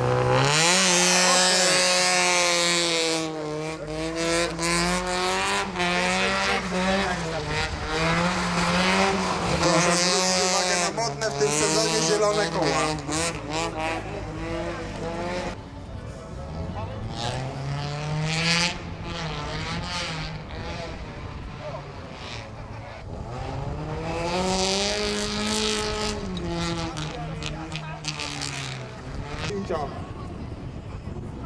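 Car engine revved hard as the car launches from the start and is driven quickly round a tight course: the pitch climbs and drops again and again with gear changes and lifts of the throttle. A loud rush of tyre and gravel noise marks the launch.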